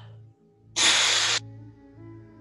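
A sharp, forceful breath blown out through the mouth as a hiss, about two-thirds of a second long, starting and stopping abruptly. It is a qigong exhalation made as the arms sweep upward. Soft, steady ambient music plays underneath.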